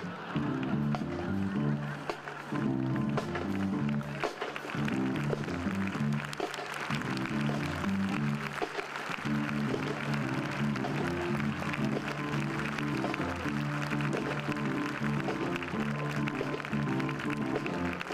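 Military band of brass and percussion playing a march-style arrangement, with a steady repeating bass line underneath.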